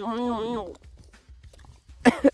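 A person's voice making one drawn-out vocal sound with a wavering pitch, under a second long, followed by faint background noise.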